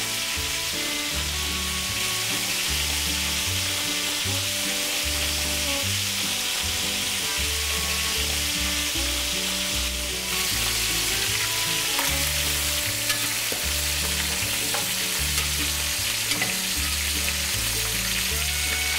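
Chicken drumsticks sizzling steadily in hot oil in a pan, pan-frying, with a background music track's bass line underneath.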